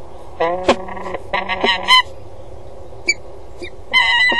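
Peregrine falcons calling at the nest box: two loud, harsh wailing calls that fall in pitch in the first two seconds, with a sharp click during the first, then short calls about three seconds in.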